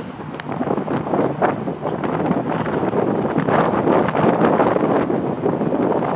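Wind buffeting the microphone of a phone carried on a moving bicycle: a loud, rough rush of noise that rises and falls unevenly.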